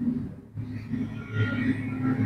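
Low rumble and hum of street traffic, growing stronger about half a second in.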